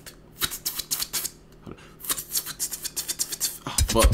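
A person making beatbox sounds with the mouth: quick runs of clicks and hissing strokes with short pauses between them, an attempt to copy a beatbox pattern.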